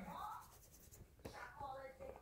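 Faint murmured speech with light scratchy rubbing and handling noises as hands handle a plastic baby doll.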